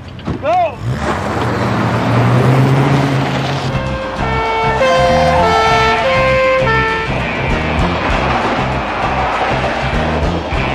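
A car engine running hard as a car speeds off, with a short high squeal about half a second in. From about four seconds in, dramatic music with a melody of stepped, held notes plays over the engine.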